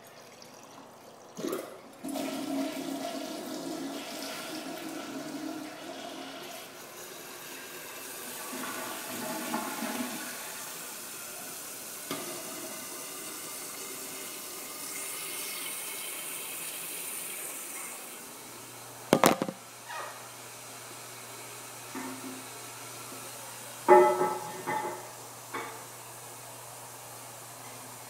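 American Standard toilet flushing about two seconds in, then the tank refilling, with water running from the refill tube into the overflow pipe; the running water stops after about sixteen seconds. Sharp knocks follow, one about a second after the water stops and a cluster near the end.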